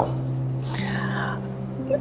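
A steady low hum of a few held tones, with a short breathy hiss about a second in, in a pause between a man's sentences.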